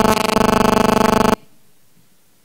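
A loud, steady electronic buzz of fixed pitch that pulses rapidly and cuts off suddenly a little over a second in: interference in the room's sound system.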